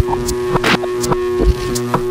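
Electronic jam on small synths and a PO-33 KO sampler: a held synth drone under a looping beat, with a deep kick about every second and a half, a sharper snare-like hit between them and lighter ticks.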